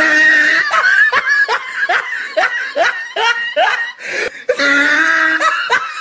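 A voice snickering: a quick run of short, rising giggles, about three to four a second, with a held pitched vocal note at the start and another near the end.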